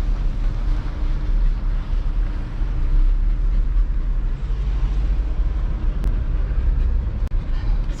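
Inside a Ford Fiesta driving slowly along a sandy dirt road: a steady low rumble of tyres, engine and wind with a couple of light knocks near the end.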